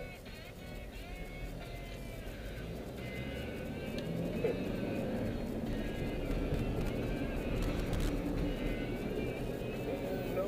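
Music playing quietly in a moving car's cabin over the car's low engine and road rumble, which grows louder over the first half as the car gathers speed.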